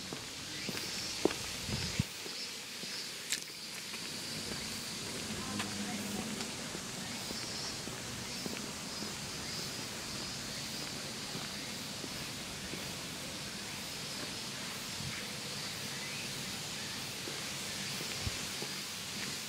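Outdoor ambience while walking on brick paving: footsteps, with a steady high-pitched hum in the background and a few sharp clicks in the first few seconds.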